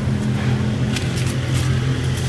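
Steady low hum of an engine or motor running, with a few faint rustles.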